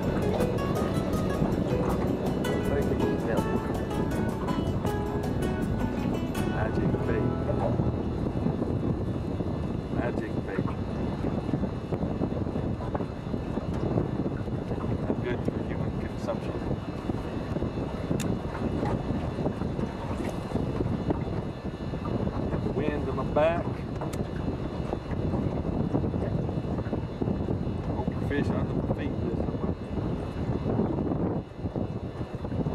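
Wind buffeting the microphone on choppy open water, a dense low rumble throughout. Music plays over it for about the first six seconds, then stops.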